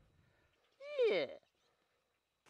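A single short, high vocal call, about half a second long, falling steeply in pitch.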